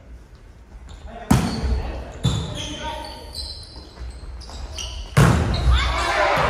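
Volleyball hits ringing through a large gym hall: a sharp strike about a second in, another just after two seconds, and the loudest near the end. Players' voices call out in between.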